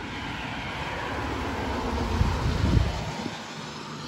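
A 2000 Toyota Sienna minivan, with its 3.0-litre V6, driving past. The engine and tyre noise grows louder to a peak a little under three seconds in, then fades as the van moves away.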